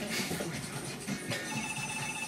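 Electronic telephone ringer trilling with an even, warbling pulse, starting about one and a half seconds in.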